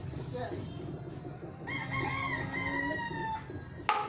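A rooster crowing once, a long held call that falls slightly in pitch towards its end. Just before the end comes one sharp knock, a plastic bottle landing on the tile floor.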